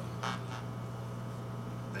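Steady low room hum in a pause between speakers, with one brief soft hiss about a quarter second in. A man's voice begins right at the end.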